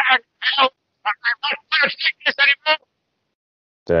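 A soundboard soundbite played into the recording: a quick run of a dozen or so short, thin, clipped voice-like syllables lasting about three seconds, then silence.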